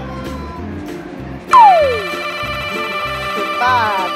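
Background music with a steady beat. About a second and a half in, a loud whistle-like sound effect slides sharply downward in pitch, and near the end a short wavering tone effect marks the cut to the next scene.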